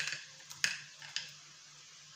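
A spoon knocking and scraping against the inside of a blender jug as blended paste is emptied into a bowl: a few sharp clicks in the first second or so, then quiet.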